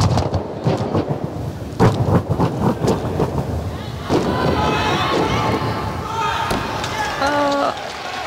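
A gymnast's hands and feet strike a sprung tumbling track in quick succession, a run of deep thuds over the first few seconds of the tumbling pass. From about four seconds in, crowd cheering and shouting rises and carries on.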